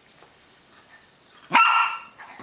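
A dog barks once near the end, a single short, sharp bark.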